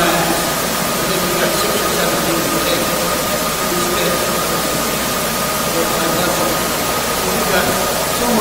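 Steady hiss of room noise with a thin, even tone running through it, and a faint distant voice, such as an audience member speaking away from the microphone.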